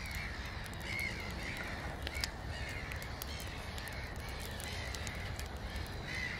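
Cawing birds calling again and again, about once a second, over a low steady rumble, with light crackling from a campfire.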